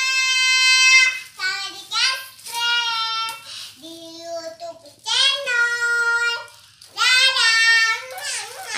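A young child singing a string of long, high held notes without clear words, several sliding up at the start, with short breaks between them.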